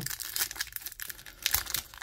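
Thin clear plastic sleeve crinkling in the hands as a trading card is worked into it: a quick, irregular run of small crackles.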